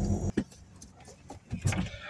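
Handling noises inside a car: a sharp click near the start, after which the low background hum stops, then a few faint clicks and a dull knock about one and a half seconds in.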